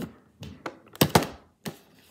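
Handling noise from a cardboard toy box: a handful of sharp knocks and taps, the loudest two in quick succession just after a second in.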